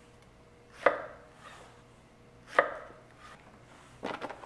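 Chef's knife chopping through zucchini onto a wooden cutting board: two sharp chops, about a second in and again just past halfway.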